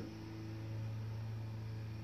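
Steady low hum with a faint hiss: room tone.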